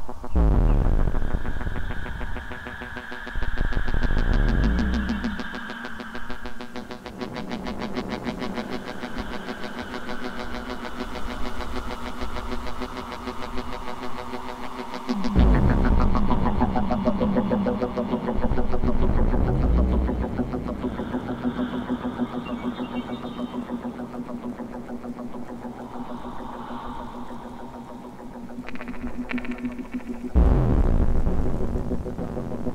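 Live electronic synthesizer music: sustained drone tones under deep bass swells that sweep down in pitch, near the start and again about halfway through, with a fast pulsing texture in between.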